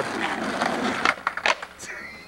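Skateboard wheels rolling on asphalt, then two sharp clacks of the board striking the pavement, about a second and a second and a half in.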